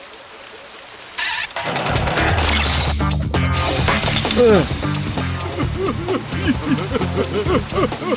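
Cartoon soundtrack: a short noisy sound effect about a second in, then comic background music with a steady bass line and a swooping, up-and-down melody.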